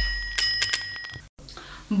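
A bell-ring sound effect: a bright ringing chime with a few sharp clicks, dying away a little over a second in. A woman's voice begins right at the end.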